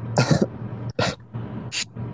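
A person coughing: three coughs about three quarters of a second apart, the first the loudest.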